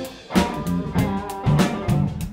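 Live funk-blues trio playing an instrumental passage: electric guitar, electric bass and drum kit. The sound drops out briefly at the start, then the band comes back in with drum hits and held bass notes.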